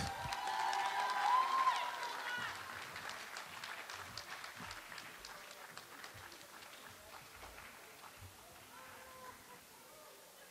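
An audience clapping, with a few voices cheering in the first couple of seconds. The applause is loudest at first and dies away gradually over the following seconds.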